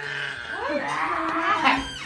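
A young child's high-pitched, drawn-out vocalizing that slides up and down in pitch, loudest near the end.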